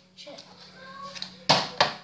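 Two sharp knocks about a third of a second apart, around one and a half seconds in, with a child's quiet voice before them.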